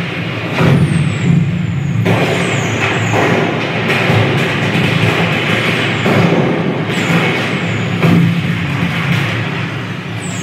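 Fireworks sound effects with music: repeated bursts followed by a crackling hiss, with sharper bursts about half a second, two, three, seven and eight seconds in, over a steady low rumble.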